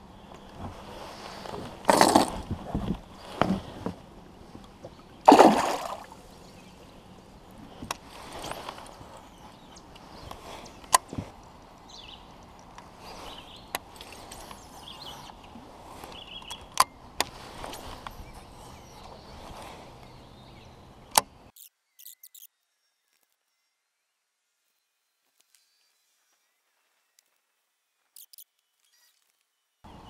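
Water splashing twice, about three seconds apart, as a largemouth bass is let go over the side of a kayak, then a few sharp clicks while the fishing rod and reel are handled. About two-thirds of the way through, the sound cuts out to dead silence.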